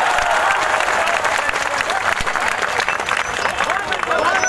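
A crowd applauding: many hands clapping in a dense, even patter, with a few voices mixed in.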